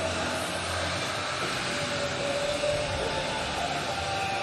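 Steady ballpark ambience: an even crowd-like hiss with faint music from the stadium speakers, no sharp events.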